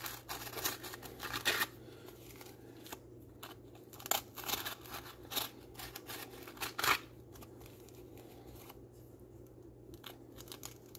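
Pencil scratching on a sanding disc as its holes are traced, in short irregular strokes, the loudest about seven seconds in, with the rustle of the disc being handled.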